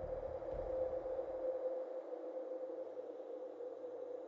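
A steady, sustained electronic drone centred in the midrange, like an ambient music pad, with its low bass dying away about a second and a half in.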